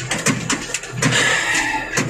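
Vehicle driven over rough forest ground, heard from inside its cab: a steady low engine hum under repeated knocks and rattles. A swishing hiss about a second in fits saplings brushing against the cab.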